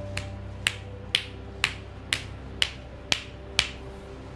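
Hands striking a client's leg in percussive massage, eight sharp claps about two a second.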